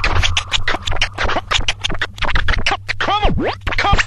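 DJ turntable scratching over a beat with a steady bass line underneath: rapid chopped cuts throughout, and a run of up-and-down pitch sweeps on a scratched sample about three seconds in.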